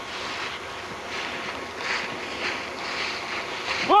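Wind buffeting a handheld camera's microphone, with irregular rustling from movement through dry leaf litter.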